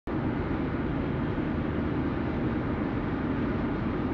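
Car cruising steadily along the road: a continuous low rumble of tyre and engine noise heard from inside the cabin.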